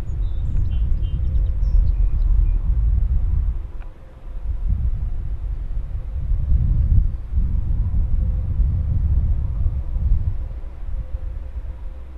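Wind buffeting the microphone outdoors: a loud, uneven low rumble that rises and falls, easing briefly about four seconds in.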